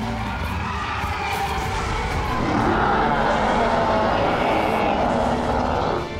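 Cartoon sound effects of a pack of small dinosaurs stampeding away: a continuous rumble of running feet mixed with dinosaur cries, getting louder about halfway through.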